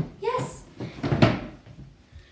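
A sharp knock right at the start, then a louder scuffing thud about a second in, like wooden furniture being bumped or shut.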